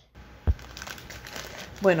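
A plastic packet of farofa (toasted cassava flour) crinkling as it is handled and turned over, with one short bump about half a second in.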